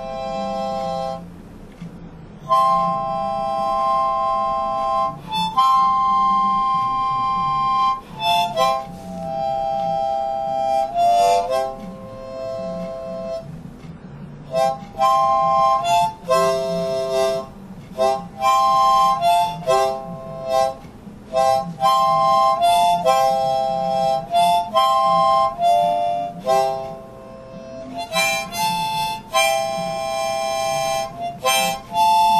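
Harmonica played solo, improvising: chords of several reeds sounding together, held for a few seconds at a time early on, then changing more quickly, in phrases with short breaks between them.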